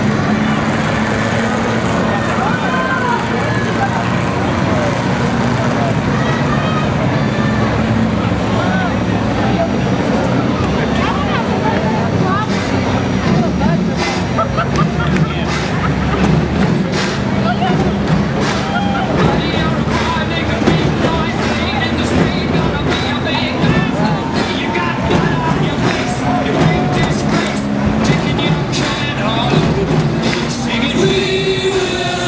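Race car engines running steadily at slow caution pace around the oval, under loud grandstand crowd chatter. Scattered clicks and knocks come in the second half.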